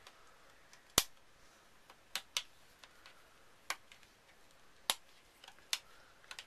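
Hugafon Guardian A1 polycarbonate and TPU phone case being pried apart at the sides: six sharp plastic clicks and snaps spread through a quiet stretch, the loudest about a second in.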